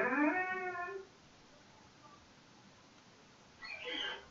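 A single drawn-out animal call, rising in pitch and ending about a second in, with a shorter call starting near the end.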